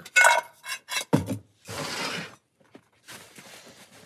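Titanium cook pot clinking and briefly ringing as a small canister stove and lighter are packed back inside it and it is set down, followed by a soft rustle.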